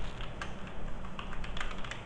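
Computer keyboard being typed on: a run of irregular key clicks as a short name is entered, over a steady low electrical hum.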